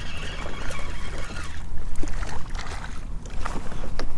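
A hooked speckled trout being reeled in to a kayak: the fishing reel clicks and crackles over water noise, with a low wind rumble on the microphone. The noise grows louder near the end as the fish reaches the surface.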